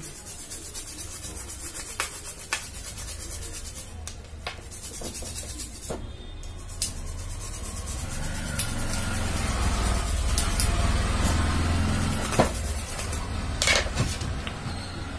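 A brush scrubbing a wet circuit board with cleaning liquid, the bristles rubbing over the board. Scattered clicks and taps come in, and the scrubbing grows louder in the second half, over a steady low hum.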